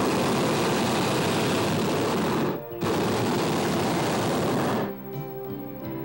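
Hot air balloon's propane burner firing: a loud rushing blast that starts abruptly, lasts about two and a half seconds, breaks off briefly, then fires again for about two seconds and cuts off.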